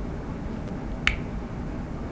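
Low steady room noise from the microphone, with a single short click about a second in.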